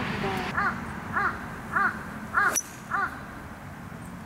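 A bird calling in a regular series of five or six calls, about one every 0.6 s. A single sharp click comes about two and a half seconds in.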